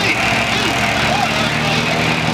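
Light taildragger plane's piston engine and propeller held at a steady high-power run-up on the start line, just before the brakes are released. The pitch climbed just before and now holds level.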